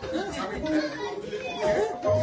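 Several people talking at once in a large hall, overlapping indistinct chatter.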